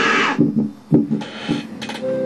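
A loud scream from a scare video playing on computer speakers, cutting off about a third of a second in. It is followed by a few short thumps and knocks.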